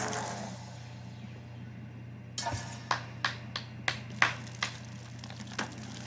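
A low steady hum, then from about halfway in roughly ten sharp metallic clicks and clinks at uneven intervals over about three seconds.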